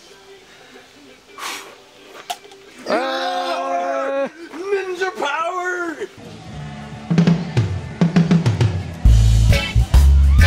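Excited wordless vocal shouts, one held for about a second, then a backing track with bass and drums coming in about six seconds in and getting loud near the end.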